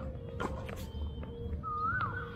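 Tennis ball hit and bouncing on a hard court: a few sharp knocks in the first second. A faint steady hum runs underneath, and a short rising-and-falling squeak comes near the end.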